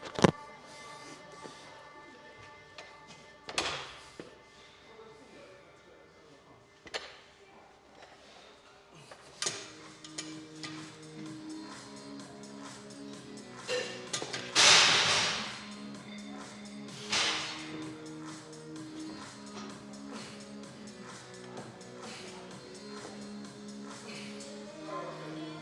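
Background music, with scattered metallic clanks and knocks from plate-loaded dumbbells being stripped and handled. The loudest sound, a noisy clatter about a second long, comes about fifteen seconds in.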